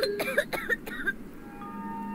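A woman's short cough in the first second, over background music. Soft held chime notes come in about a second and a half in.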